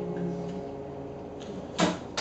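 An acoustic guitar's last chord rings out and fades. Near the end there is a sharp clap as applause begins.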